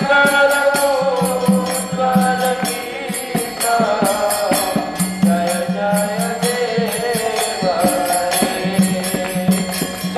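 Devotional kirtan: a sung chant held on long, slowly bending notes, over a steady beat of jingling metallic percussion.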